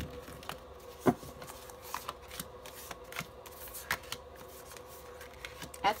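Tarot cards being dealt and laid down on a table: scattered soft taps and slides of card on card and cloth, one sharper tap about a second in, over a faint steady hum.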